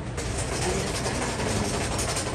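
Steady background noise of a busy crowd in an airport arrival area, with faint distant voices in the hubbub.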